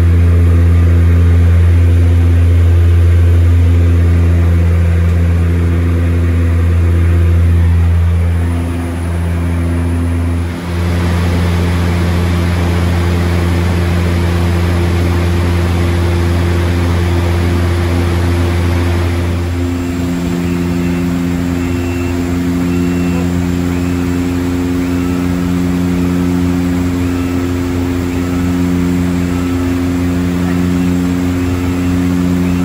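Cabin drone of a DHC-6-300 Twin Otter's two turboprop engines and propellers in flight: a loud, steady, deep propeller hum with steady tones above it. About two-thirds through the sound changes abruptly, the deep hum weakening and the higher tones shifting to a lighter drone.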